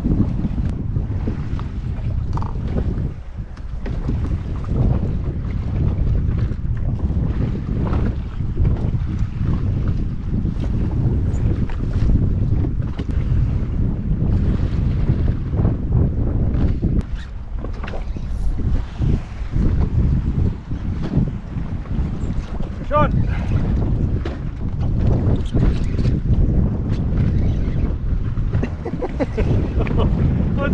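Wind buffeting the microphone on open water, a heavy rumbling noise with irregular gusts, over choppy sea lapping around a drifting jet ski.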